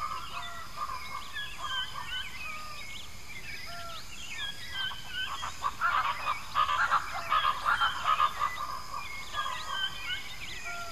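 Tropical rainforest ambience: many birds chirping and whistling in short calls over a steady high hum. From about halfway through there is a louder run of rapid calls lasting about three seconds.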